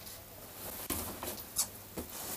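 Faint handling noise: soft rustling with a few short, sharp scratchy clicks, the loudest about a second and a half in.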